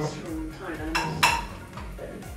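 Dishes being handled: plates and skewers knocking and clinking, with one sharp, ringing clink of a plate about a second and a quarter in.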